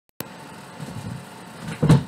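Steady microphone hiss that opens with a sharp click, then a short, loud burst of noise near the end.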